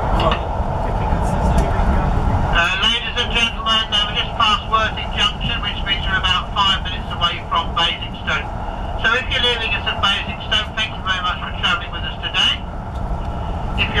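Steady rumble of a passenger coach running on the rails, heard from inside the moving train. From about three seconds in until near the end, a voice talks over it.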